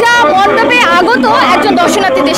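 Speech: people talking, with voices chattering over one another.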